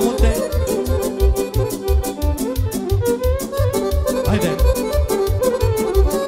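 Instrumental Romanian folk dance music: a lead melody over a steady oom-pah beat of bass and off-beat chords, with no singing.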